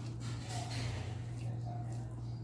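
A person eating rice by hand: soft chewing and mouth sounds and fingers squishing through rice, over a steady low hum.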